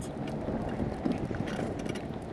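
Wheelchair rolling along a concrete sidewalk: a steady rolling rumble with small rattles and clicks.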